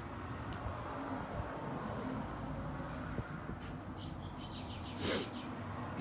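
A man tasting beer: a steady low background hum with one short, sharp breath out about five seconds in.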